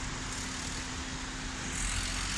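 Road traffic: a queue of cars running at a crawl close by, a steady engine hum over road noise that grows a little louder near the end.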